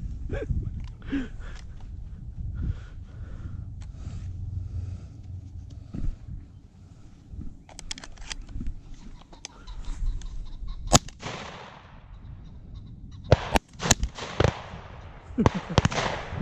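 Shotgun shots. One loud shot about eleven seconds in is followed by an echo. Several more shots come close together a few seconds later, with fainter, more distant shots before them.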